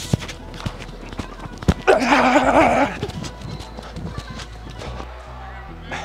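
Quick footfalls of a sprinter on artificial turf, heard as scattered sharp thuds under steady background music. A loud shout rings out about two seconds in.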